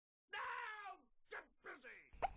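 A high-pitched voice: one drawn-out call falling in pitch, then two short falling syllables.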